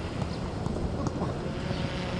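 Outdoor training-ground background noise: a steady low rumble with scattered light knocks and faint distant voices.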